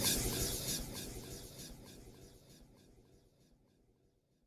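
The end of a song fading out, sinking steadily to silence within about three seconds, with faint regular ticks running through the fade.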